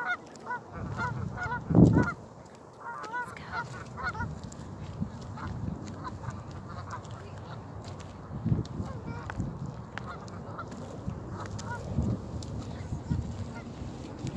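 A flock of birds calling: a dense run of short, repeated calls over the first few seconds, then only scattered calls. Wind gusts buffet the phone's microphone, loudest about two seconds in and again later on.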